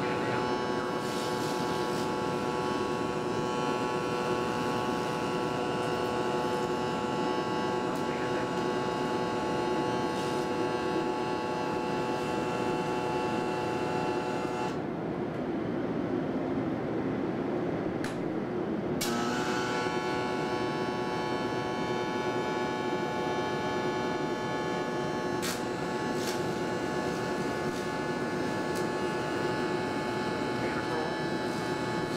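Electric arc welding on a steel plate: steady arc noise over a steady hum. The high end drops away for about four seconds in the middle.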